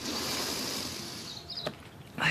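A woman drawing a long, deep breath as she tries to catch her breath, fading after about a second and a half.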